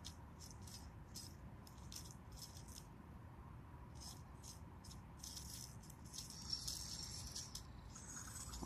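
Faint, irregular scratchy clicks and rustles from a gloved hand handling a plastic toy figure, growing busier about five seconds in.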